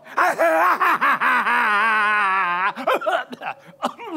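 A man's theatrical mad-scientist cackle: a loud, quavering laugh in quick pulses, held for about two and a half seconds before breaking off.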